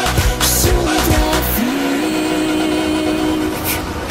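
Albanian pop song. The beat and bass cut out about a second and a half in, leaving a held note that dips and rises, with swishing noise effects.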